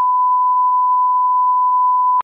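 Broadcast line-up test tone, the 1 kHz reference tone that goes with colour bars: one steady, unchanging pure tone, loud and without a break.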